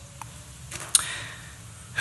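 A quiet pause in a room, broken by one short sharp click about a second in.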